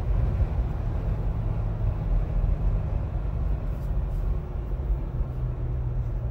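In-cab engine and road noise of a Jeep Gladiator pickup towing a heavy trailer: a steady low rumble from the engine and tyres as the truck slows down with cruise control off.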